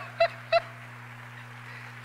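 A person laughing: two short, high-pitched 'ha' syllables in the first half-second, then it stops. A steady low hum runs underneath.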